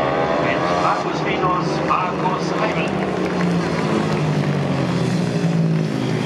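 Speedway sidecar outfits racing round a dirt oval, their engines running hard at race speed as a steady loud drone. A voice is heard over the first half.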